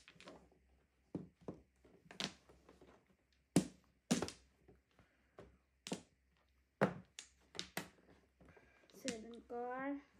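Mahjong tiles clacking as they are discarded and laid on the table, a dozen or so sharp clicks at uneven intervals. Near the end a person's voice is heard briefly in a drawn-out syllable.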